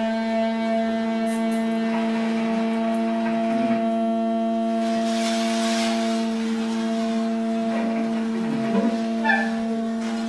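A single long, steady held tone with a stack of even overtones, unchanging in pitch, in free-improvised music. Light scrapes sound under it, and a few small clinks come near the end.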